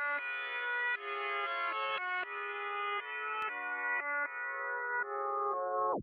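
Instrumental intro of a dark trap beat: slow sustained chords that change about once a second, with no drums yet.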